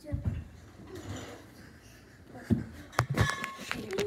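Children jumping and landing, a handful of sharp thumps about two and a half to three and a half seconds in, with softer knocks near the start.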